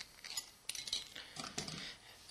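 Faint, scattered clinks and clicks of stainless-steel sink strainers and small plastic washers being handled and stacked onto a bolt.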